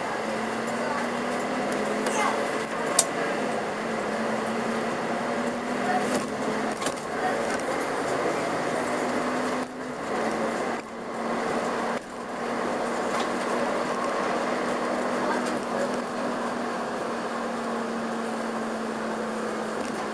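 Inside a Karosa B731 city bus on the move: the diesel engine and drivetrain give a steady drone with a held hum, with clicks and rattles on top and a sharp click about three seconds in. The sound drops away briefly twice about halfway through.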